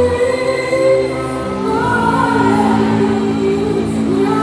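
Live gospel singing: a voice holding long, sliding notes over sustained backing music, with choir-like voices behind it.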